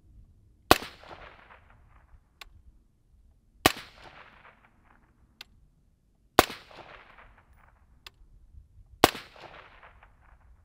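Four suppressed 5.56 rifle shots, roughly three seconds apart, from a 10.5-inch LMT AR fitted with a Dead Air Nomad 30 suppressor with e-brake. Each shot is a sharp report with a short fading tail. The shooter judged this the quietest and least gassy of the three cans.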